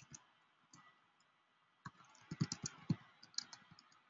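Computer keyboard typing: separate key clicks, a few scattered at first, then a quick run of keystrokes in the second half.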